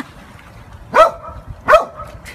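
A large dog barking twice, about a second in and again just before the end.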